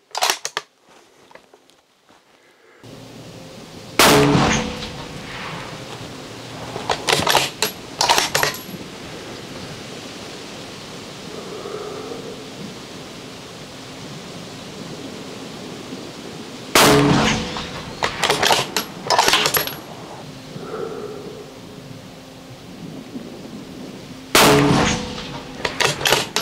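Three rifle shots from a bolt-action precision rifle with a muzzle brake, a few seconds in, about two-thirds through and near the end, each a sharp crack with a short ringing tail. Between shots come quick metallic clicks and clacks as the bolt is worked to chamber the next round.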